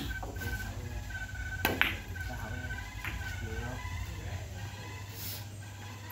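Carom billiards shot: a sharp click of the cue striking the ball about a second and a half in, followed about a second later by a fainter click of the balls meeting.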